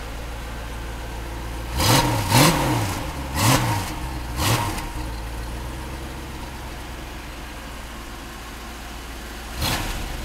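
1993 Corvette's 350 LT1 V8 idling through its dual exhaust, blipped four times in quick succession about two seconds in, each rev rising and falling straight back to idle. One short, sharp blip follows near the end.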